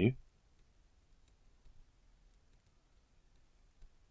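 Faint, scattered clicks of a stylus nib tapping and sliding on a tablet screen while words are handwritten.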